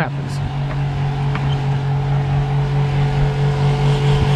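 Spectra watermaker's electric feed pumps running with a steady low hum, the system still unpressurized with the pressure relief valve open.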